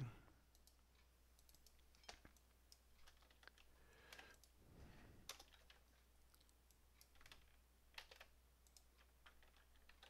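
Near silence with faint, scattered computer keyboard and mouse clicks, about a dozen in all, as code is copied and pasted between files.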